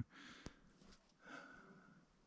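Near silence, with a faint click about half a second in.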